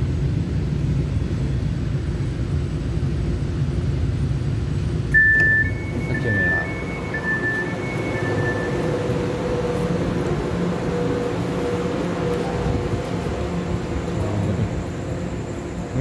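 Taiwan Railway EMU900 electric commuter train at a platform: about five seconds in, a two-tone beeping chime alternates high and low for about four seconds, typical of the train's door-closing warning. Then the train pulls away with a steady low rumble and a humming electric motor tone.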